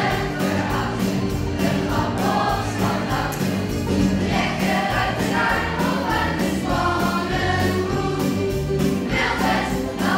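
A group of children singing a cowboy song together over backing music with a steady beat and a repeating bass line.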